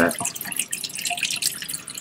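Thin stream of tap water running into a stainless steel sink, an irregular patter of small splashes.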